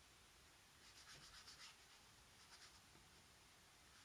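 Faint scratchy strokes of a small synthetic brush laying acrylic paint onto mixed media paper: a quick run of short strokes about a second in, then a few more around the middle. Otherwise near silence.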